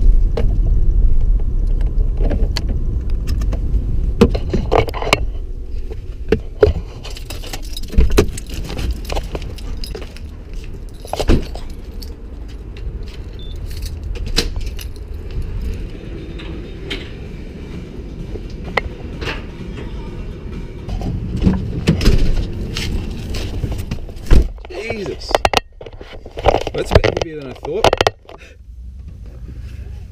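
Low car-cabin rumble from the engine and road while driving, then a run of scattered clicks and knocks with keys jangling, from someone moving about with keys in their pockets.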